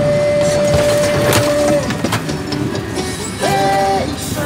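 Knocking and rattling in a moving truck cab, with radio music heard under it as a steady held note early on and again near the end.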